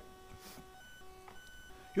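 A quiet pause: faint background hiss with a few thin, steady electronic whines that come and go.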